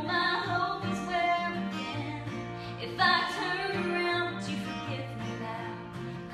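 Acoustic string band of resonator guitar, acoustic guitar and mandolin playing a country tune, with plucked and sustained notes throughout and a louder attack about halfway through.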